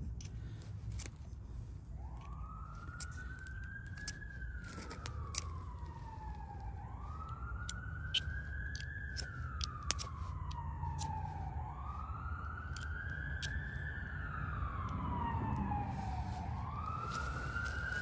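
Emergency vehicle siren in a slow wail, its pitch rising and falling about every four and a half seconds, starting about two seconds in and going through four cycles over a steady low rumble.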